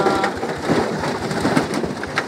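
Cassava being ground, heard as a dense crunching, crackling noise made of many small clicks.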